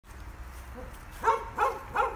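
A dog barking three short times in quick succession, starting about a second in, over a steady low rumble.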